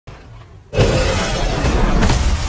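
Monster-movie trailer sound effects: faint at first, then about three-quarters of a second in, a sudden loud crashing, shattering noise breaks in and carries on.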